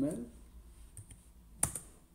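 Computer keyboard: a faint keystroke, then one sharp key press late on. This is the Enter key being struck to run the typed command.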